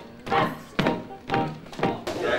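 Piano accompaniment played as short, evenly spaced chords, about two a second.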